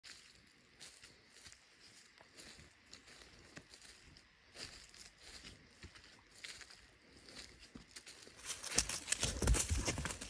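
Soft, irregular crunches of footsteps in dry leaf litter. From about nine seconds in come much louder rustling and low thumps as a Vizsla runs up close through the leaves.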